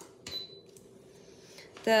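A single light clink of a small hard object set against a hard surface about a quarter second in, with a brief high ringing note after it.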